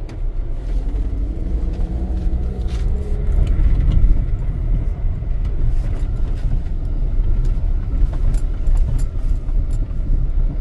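Car driving, heard from inside the cabin: a steady low rumble of engine and road noise, with a few light clicks or rattles near the end.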